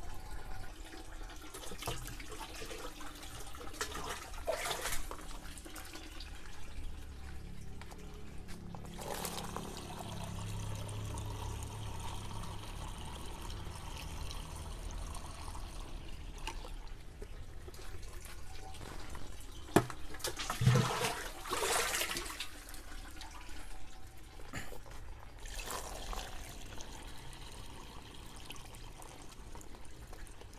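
Water being poured and sloshing from a plastic bucket, filling a 16-litre sprayer tank, in several separate spells with the loudest about two-thirds of the way through.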